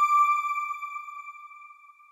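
A single high electronic chime note from a news channel's end-card sting, ringing and fading away over about two seconds.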